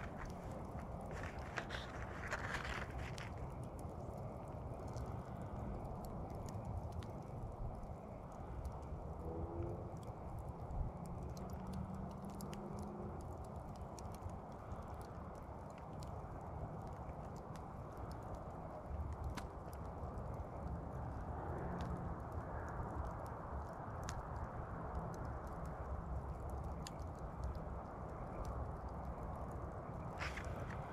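Dying campfire embers giving off sparse, faint crackles and ticks over a steady low outdoor background noise.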